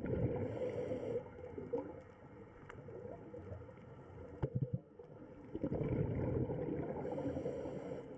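Underwater sound of a scuba diver's breathing: low gurgling rumbles of exhaled bubbles, with a brief hiss from the regulator on an inhale about half a second in and again near the end.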